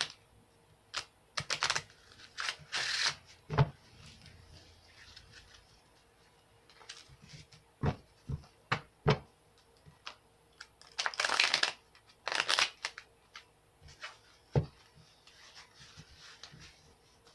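A tarot deck being shuffled by hand: irregular bursts of card rustle, with several sharp taps of the cards in between.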